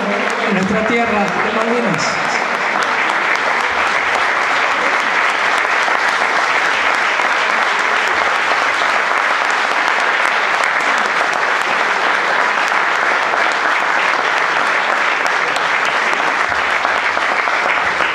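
Audience applauding steadily for a long stretch, with a man's voice over it for the first two seconds.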